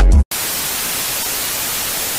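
Steady white-noise static hiss used as a transition sound effect. It cuts in right after the music stops abruptly a quarter second in.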